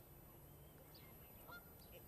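Faint, near-silent lake ambience with scattered small bird chirps, and one short waterbird call about one and a half seconds in.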